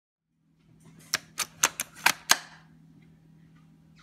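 A quick, uneven run of six sharp clicks over about a second, then a low steady hum.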